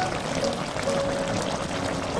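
Spicy braised chicken stew bubbling as it simmers in the pot, a steady crackling bubble, under background music with held melody notes.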